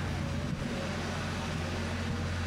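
Steady low rumble of outdoor background noise, like distant city traffic, with no distinct event.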